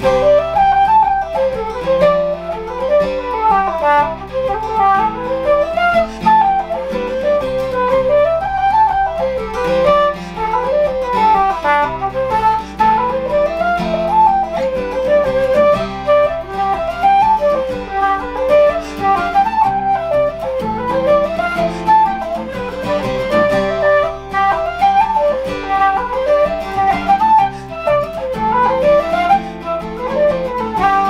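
Keyed wooden Irish flute playing a fast jig melody in C, with steady strummed acoustic guitar chords underneath.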